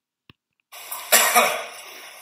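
A person coughing about a second in, over room noise that begins abruptly out of silence.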